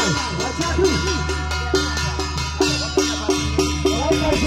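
Temple ritual music driven by a small struck metal percussion instrument, bell-like in tone, beating a fast steady rhythm of about four strokes a second. Other pitched music sounds under it.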